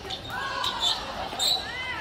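Sneaker soles squeaking on a sports-hall court floor: two short high squeaks that rise and fall in pitch, with a sharp tap about one and a half seconds in.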